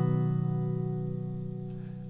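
Acoustic guitar strummed G-shape chord, capoed at the fourth fret so it sounds as B major, left to ring and slowly fading away with no new strums.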